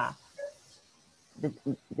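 Hesitant speech over a video call: a voice trails off, there is a brief pause, then a few short halting syllables as the speaker starts again.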